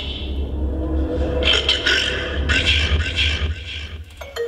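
Steady low hum from a band's stage amplification in a live club between songs, with two short stretches of noisy crowd or stage sound about a second and a half in and again near three seconds.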